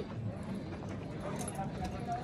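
Racehorse hooves stepping on sandy dirt as the horse is led at a walk, with people talking in the background.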